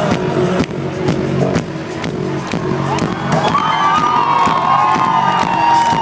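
Live electronic rock concert in a stadium, recorded from within the audience: the band plays with a steady drum beat, and the crowd cheers and shouts over it.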